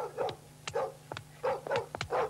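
Short dog-like yelping barks, about five in two seconds, mixed with sharp clicks.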